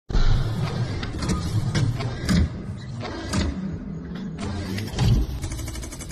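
Sound effects for an animated mechanical logo intro: a low whirring rumble with a series of sharp metallic clicks and clanks, coming thick and fast near the end.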